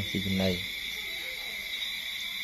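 Night insects trill steadily in two high tones. A short, low, voice-like sound comes briefly about half a second in.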